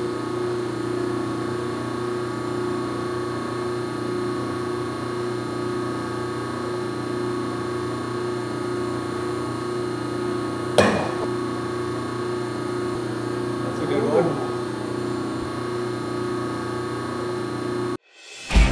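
Instron tensile testing machine running with a steady hum as it pulls a welded aluminium test strip, then a single sharp snap about eleven seconds in, the strip breaking under load.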